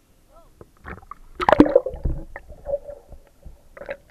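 Water splashing and sloshing over a camera as it goes below the sea surface, loudest about a second and a half in, followed by muffled underwater sound. Brief voices are heard at the start.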